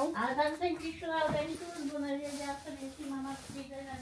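Speech only: a woman talking, quieter than the surrounding conversation.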